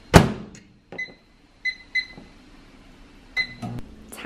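A microwave oven door is shut with a loud knock, then the keypad gives four short beeps at the same pitch, with light button clicks, as the cook time is set and started.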